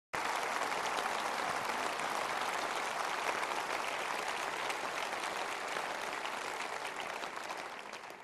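Large seated audience applauding, a dense steady clapping that slowly dies down toward the end.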